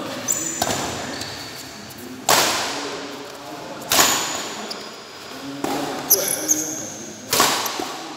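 Badminton rackets striking a shuttlecock in a rally: four loud smacks, one about every one and a half to two seconds, each ringing on in the echo of a large hall. Short high squeaks of shoes on the court come between the hits.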